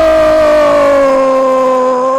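A male radio football commentator's drawn-out goal call, one loud "goooool" held on a single note that sinks slightly in pitch.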